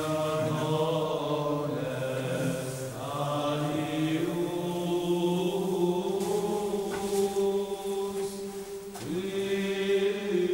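Slow vocal chanting in long held notes, several voices sustaining low pitches that move to new notes every few seconds.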